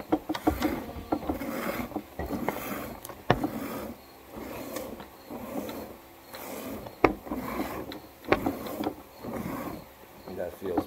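Hand-milking a goat: streams of milk squirt into a stainless steel pail about once a second, with a few sharp knocks against the pail along the way.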